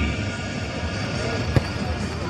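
A football struck hard in a penalty kick: one sharp thud about one and a half seconds in, over steady background noise.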